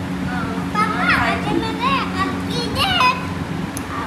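A young child's high-pitched voice calling out several times from about a second in, with no clear words, over a steady low hum.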